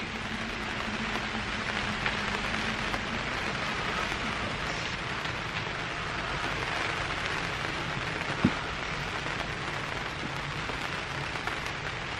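Steady rain pattering on the polythene cover of a polytunnel. There is one brief knock about eight seconds in.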